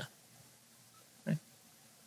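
Near silence, broken once about a second and a quarter in by a single short grunt-like sound from a person's voice.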